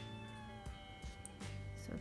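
A domestic cat meowing: one long, drawn-out meow of about a second and a half that dips slightly in pitch as it ends, heard faintly over soft background music.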